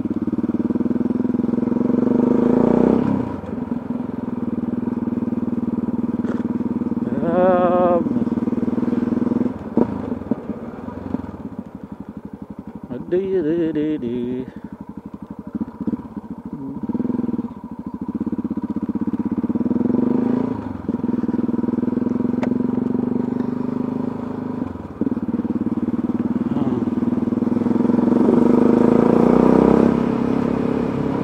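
Motorcycle engine heard from the rider's seat while riding, its note rising and falling with the throttle. It eases off to a lower run in the middle and picks up again, loudest near the end.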